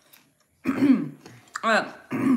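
A person clearing their throat.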